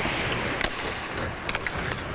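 Ice hockey practice: skate blades scraping and hissing on the ice, with a few sharp clicks of sticks and puck, about half a second in and a cluster near a second and a half.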